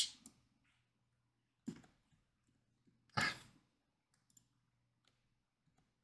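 Quiet room tone with a few faint computer mouse clicks, and a short breathy 'ah' from a man's voice about three seconds in.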